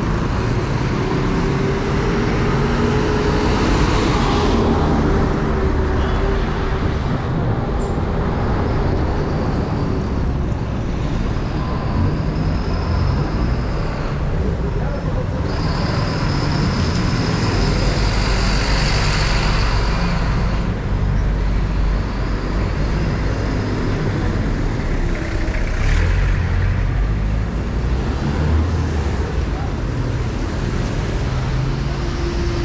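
Busy city street traffic: cars, motorcycles and a city bus passing close by, with steady engine rumble and tyre noise. A high whine rises over the traffic for several seconds in the middle.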